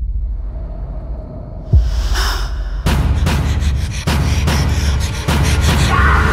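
Suspense film-trailer score: a low droning rumble opened by a deep boom, a second hit about two seconds in, then a breathy gasp and rapid pulsing hits that build from about three seconds in.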